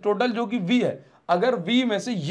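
Speech only: a man talking in Hindi, lecturing.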